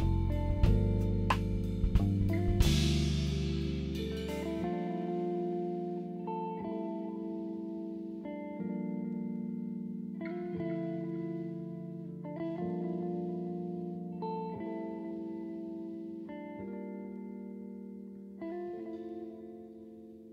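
Instrumental background music: a beat with bass and a crash in the first few seconds, then held chords changing about every two seconds and slowly fading away.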